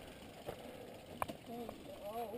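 Faint rattle and clicks of mountain bikes being walked along a dirt trail, with a small click about half a second in and a sharper one a little past the middle.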